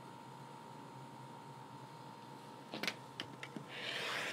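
A few light clicks of a clear acrylic quilting ruler being set and shifted on a cutting mat, then near the end a short swishing rotary cutter stroke slicing through fabric along the ruler's edge, over a faint steady hum.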